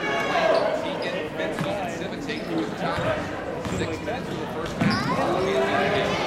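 Basketball being dribbled on a hardwood gym floor, with a crowd of spectators talking throughout.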